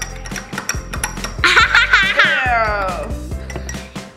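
A young girl's high-pitched laugh, sliding down in pitch, about halfway through, over background music.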